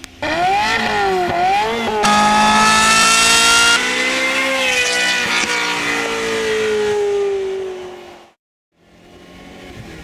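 Ferrari F355 Spider's V8 on a Capristo exhaust with Fabspeed headers, revved up and down twice, then held at high revs before a long, slowly falling note as it fades away. The sound cuts off about eight seconds in.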